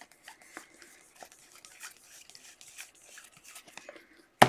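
Faint scattered ticks and light rubbing of a stack of glossy Donruss Optic football cards being shuffled through by hand.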